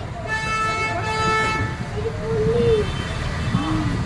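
A steady, horn-like honk lasting about a second and a half, with voices behind it.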